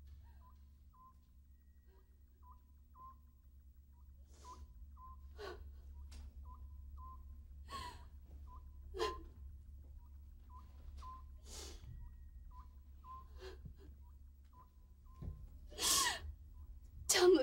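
Night ambience of a single insect chirping: short, high chirps repeating about twice a second over a low steady hum, with a few soft breathy or rustling sounds in between.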